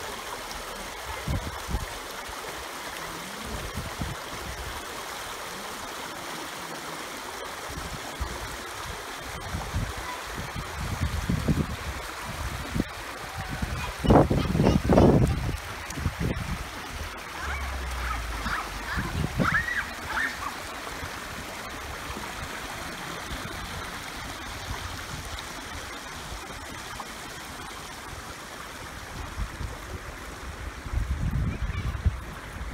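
Small stream of river water running over a line of rocks, a steady babble. A few loud low thuds come about halfway through.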